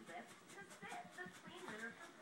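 Newborn puppies squeaking and whimpering faintly, over indistinct background speech.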